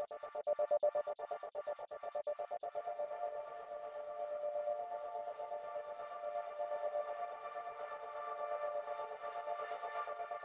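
Techno synth pad chord played back through a multiband rhythmic chopper plugin (Unfiltered Audio TRIAD, 'Bass Sequence Chopper' preset), cut into rapid, even pulses. After about three seconds the chopping grows less pronounced and the chord sustains more smoothly.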